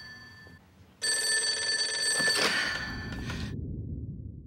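Telephone bell ringing: the end of one ring fades out, then a second ring begins about a second in and lasts about two and a half seconds before cutting off.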